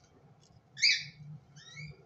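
A five-day-old cockatiel chick calling: one loud call about a second in, then a shorter, quieter call near the end.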